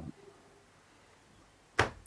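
Pause in a man's speech: low room tone, then a single short burst of breath and mouth noise as he starts his next word, shortly before the end.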